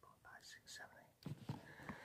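Faint whispered speech: a man muttering quietly under his breath, with soft hissy sounds.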